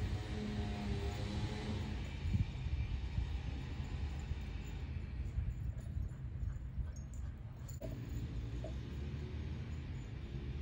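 Faint outdoor ambience: a low, uneven rumble, with faint musical tones near the start and again near the end.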